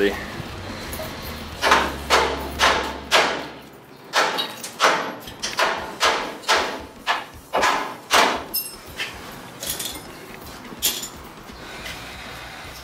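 Hammer blows on steel: a run of about a dozen sharp strikes, roughly two a second, with a pause partway through and one last blow near the end.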